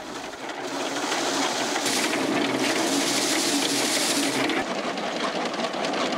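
Paddy thresher running as a bundle of rice stalks is held against its spinning drum, stripping the grain: a steady rushing noise that builds up over the first second and then holds.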